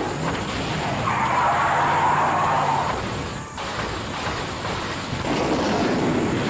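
Cartoon sound effects of vehicles taking off: a steady engine drone under a loud rushing noise for about three seconds, a brief dip about three and a half seconds in, then the rushing noise again.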